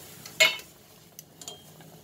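A utensil knocking against a stainless steel cooking pot of boiling water. There is one sharp clink with a short ring about half a second in, then a few light clicks, over a faint boiling hiss at the start.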